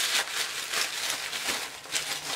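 Packaging crinkling and rustling as a small package is opened by hand: a quick, irregular run of crackles.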